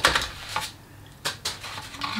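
A few sharp clicks and taps of packaging being handled as a box is opened and a product is taken out, scattered irregularly with short quiet gaps between them.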